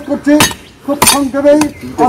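A voice narrating in Bengali, with a short pause about halfway.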